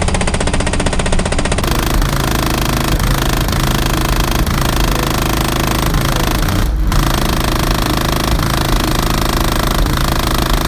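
Very loud, deep bass from a car audio system's two PSI Platform 5 subwoofers tuned to 26 Hz, heard from outside the closed car, coming through as a dense, rattling buzz. It drops out briefly about seven seconds in.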